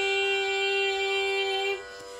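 Carnatic singing: a voice holds one long, steady note, which stops shortly before the end, leaving a fainter steady tone beneath.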